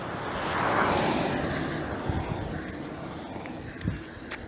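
A passing vehicle: a rushing noise that swells about a second in, then slowly fades away.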